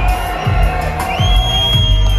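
Live hip-hop concert sound: a heavy bass beat playing loud through the PA, with crowd noise underneath. About a second in, a single high tone slides up and is held steadily.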